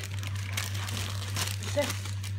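Christmas wrapping paper crinkling and rustling in irregular crackles as a dog paws and tears at a wrapped present, over a steady low hum.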